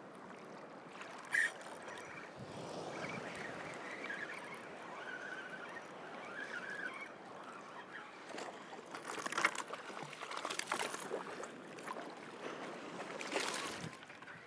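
Shallow surf water sloshing around a wading angler while a spinning reel is cranked, fighting a hooked fish. The sound is a steady wash of water noise, with a few louder rushes of water near the middle and just before the end.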